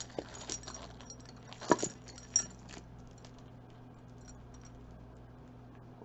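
Costume jewelry clinking as it is handled: several light metallic chinks and taps with a brief high ring over the first three seconds, the sharpest two close together near the middle of that stretch.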